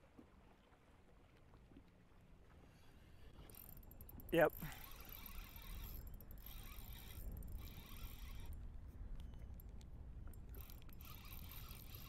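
Spinning reel being cranked against a hooked fish, its gears and drag running with a fine whirring in several short spells, over a low rumble of wind and water.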